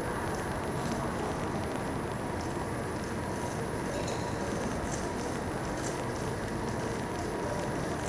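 Steady background noise of a busy indoor space, an even rumble and hiss without distinct voices, with a few faint clicks.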